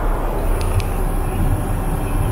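Steady low drone of a Boeing 777-300ER's engines and airflow in cruise, heard inside the cabin. Two faint ticks come just over half a second in.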